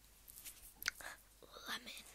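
A girl whispering briefly, with a sharp click just under a second in and light rustling from handling candy.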